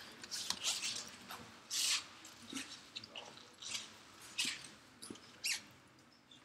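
About a dozen short, irregular rustling and crinkling noises close to the microphone, the longest and loudest about two seconds in.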